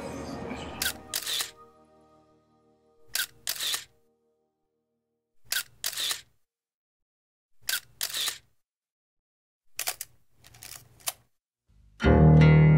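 Camera shutter clicks, a quick double click repeated about every two seconds with silence between. A held musical chord fades out over the first few seconds.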